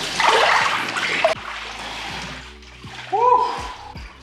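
Cold-plunge tub water splashing heavily as a man ducks his whole body under, then settling to quieter sloshing. Just after three seconds in he surfaces with a short, arching vocal cry.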